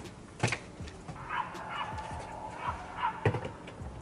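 A few sharp knocks and bumps as a plant pot and balcony furniture are handled, the loudest about half a second in and another a little after three seconds. In between, an animal calls faintly several times in quick short bursts.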